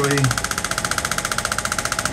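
Radial shockwave therapy applicator firing a rapid, steady train of pulses, about fifteen a second.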